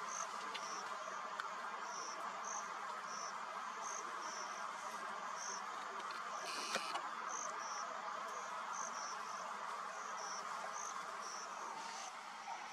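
Insects chirping in the grass: short, high chirps repeating about twice a second over a steady background buzz, with a single click a little past halfway.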